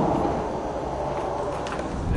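Low, steady rumble of outdoor background noise, with a few faint clicks near the end.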